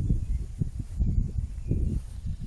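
Wind buffeting an outdoor microphone: an uneven low rumble with a few soft knocks.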